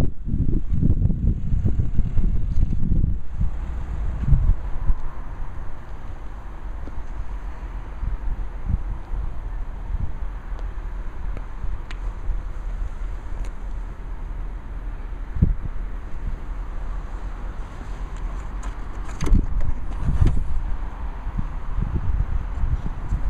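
Wind buffeting the microphone with a steady low rumble as the camera is carried round a parked car, gusting hardest in the first few seconds. A few short knocks come near the end, as the boot lid is opened.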